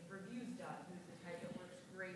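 Faint speech from a voice away from the microphone, too quiet to be transcribed.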